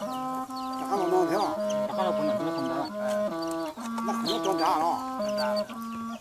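Chickens clucking, with short high chirps scattered through. Under them runs a melody of held notes that steps back and forth between a few pitches.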